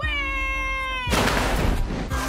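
A long, high-pitched wail that sinks slightly in pitch, cut off about a second in by a loud burst of rough noise.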